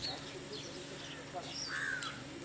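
Birds chirping repeatedly, with one louder, harsher call near the end, over a faint murmur of voices.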